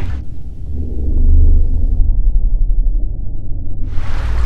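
A loud, deep rumble with almost nothing higher in it. From about halfway through it sounds more muffled still, with the upper sounds cut off entirely.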